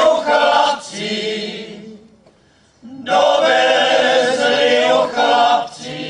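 A small folk choir singing a Czech folk song unaccompanied, in two phrases: each is loud and then drops to a softer, lower line, with a short breath-pause about two seconds in.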